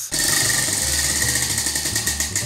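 Prize wheel spinning, its pointer clicking rapidly and steadily against the pegs around the rim.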